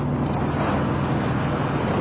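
Moskvich Aleko's engine running at a steady speed while driving, a constant drone with road and wind noise, heard from inside the cabin.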